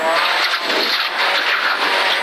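In-car sound of a Ford Fiesta rally car driving fast on gravel: the engine running under a steady, dense rush of gravel and tyre noise.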